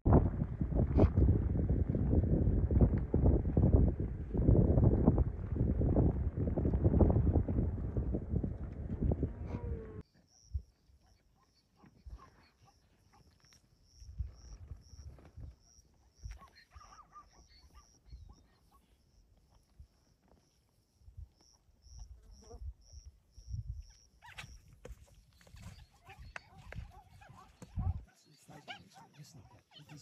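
Lionesses growling, loud and rough, for about the first ten seconds, then cut off abruptly. Softer scattered sounds and a thin steady high whine follow.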